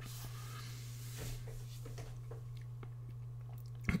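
Quiet room tone: a steady low hum with a few faint scattered clicks.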